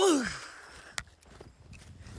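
A man lets out a loud, breathy sigh that falls in pitch and fades within about half a second. A single sharp click follows about a second in.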